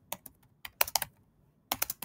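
Typing on a computer keyboard: a quick, uneven run of keystrokes, a pause of about half a second, then another run near the end.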